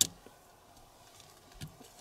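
Faint handling noises of a plastic tassel maker frame and cotton crochet thread as it is turned over: a sharp click at the very start, then quiet light ticks and a soft knock about one and a half seconds in.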